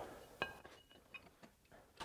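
A single short metallic clink with a brief ring about half a second in, as a thick steel plate is set in place, followed by a few faint light taps.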